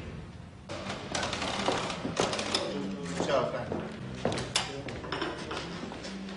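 Bar background: indistinct voices, clattering and knocking, and low background music. It picks up just under a second in, after a quieter start.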